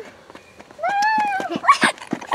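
A young child's high-pitched squeal, rising and then falling in pitch over most of a second, followed by a short breathy laugh.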